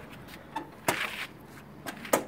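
Hinged dual seat of a 1964 Triumph 3TA motorcycle being lowered and shut, with a sharp click just under a second in, a brief rustle after it, and a lighter knock near the end.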